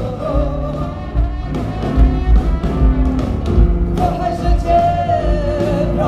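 Live blues band with vocals: singing over electric guitar and drums, with one long sung note held from about four seconds in.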